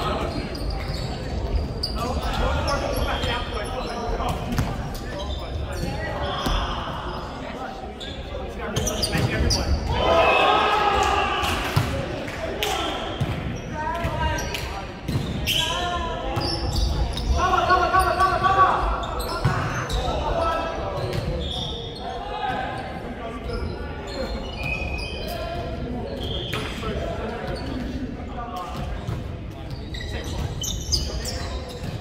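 Volleyball being played in a reverberant sports hall: repeated sharp smacks of the ball being hit, with players shouting calls that are loudest in the middle stretch.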